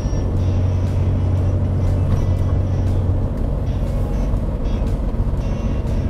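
Steady low drone inside the cabin of a moving DeLorean DMC-12, its engine and road noise running evenly, with background music playing over it.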